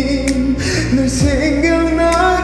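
A man singing a Korean pop ballad into a microphone over a karaoke backing track, holding long sustained notes that step between pitches.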